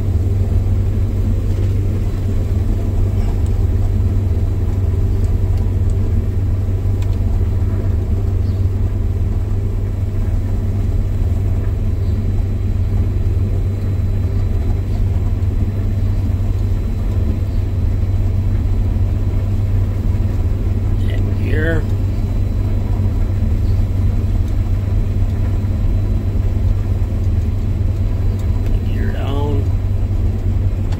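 A combine harvester running while harvesting, heard from inside its cab: a steady, loud, low drone of engine and machinery that holds constant throughout.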